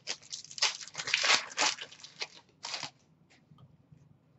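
A 2019-20 Upper Deck O-Pee-Chee Platinum hockey card pack being opened: the foil wrapper torn and crinkled, with the cards handled, in irregular bursts for about three seconds.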